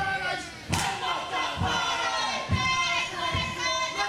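Men performing a Māori haka war dance, shouting a chant in unison with thuds of the dance about once a second.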